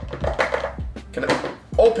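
Background music with deep bass notes that glide downward about twice a second, under light tapping and handling of a small cardboard box on a table.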